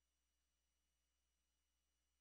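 Near silence: only a faint, steady low hum and hiss.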